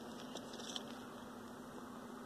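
Faint light clicks of a plastic action figure being handled, its parts not clipping in place, over a steady low hum.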